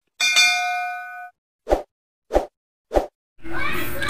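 Sound effects of an animated subscribe button: a bright bell-like ding that rings and fades over about a second, followed by three short pops spaced a little over half a second apart. Background music starts near the end.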